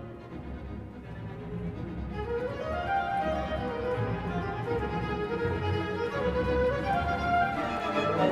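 Orchestral music led by strings with a violin melody, starting soft and building in loudness from about two seconds in.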